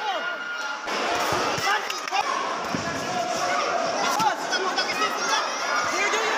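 A boxing crowd shouting and calling out, many voices overlapping, with scattered dull thuds from the ring.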